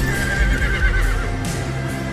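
A horse whinnies once for about a second, the call wavering in pitch, over loud film-score music with a heavy low beat.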